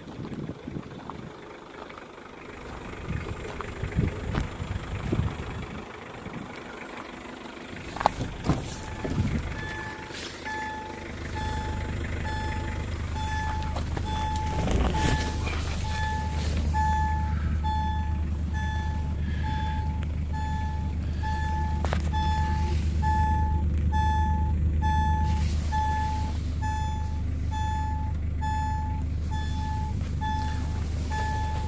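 A 2006 Hyundai Starex van's warning chime beeping steadily about once a second, starting about a third of the way in after a sharp click. Soon after the chime begins, the van's engine starts and settles into a steady low idle.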